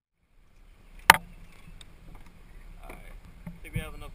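Handling noise in a plastic kayak: one sharp, loud knock about a second in, then small clicks and low rumbling as the man handles a fish. A man's voice starts near the end.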